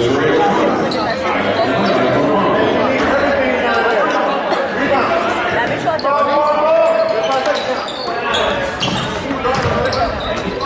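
A basketball bouncing on a hardwood gym floor during play, among indistinct voices of players and spectators, echoing in a large gym.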